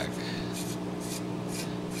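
A few light scratchy scrapes of a thin hex screwdriver working a small screw in a carbon-fibre quadcopter frame, over a steady low hum.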